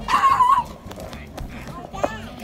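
A puppy barking and yipping, with a longer wavering cry near the start.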